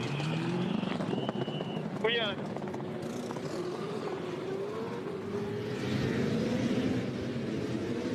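Supercars V8 race car engine accelerating, its pitch climbing over the first second, then held at high revs with small rises and falls.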